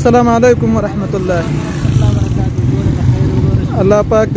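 A man speaking over a steady low rumble of street traffic.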